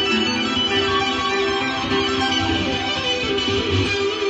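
Electric guitar playing an improvised lead over a recorded backing track.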